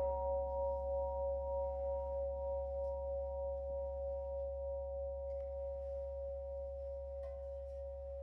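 Antique Mani singing bowl, struck with a mallet just before, ringing on and slowly fading: a clear high tone with a few overtones whose loudness wavers in slow pulses. A faint light tap about seven seconds in.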